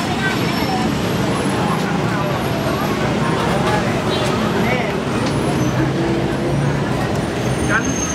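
Busy street ambience: steady road traffic with buses and cars running, under the voices and chatter of people close by.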